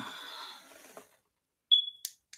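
Rustling and handling noise as the camera is moved, with a faint high tone under it, then a short, loud high-pitched beep just before the end.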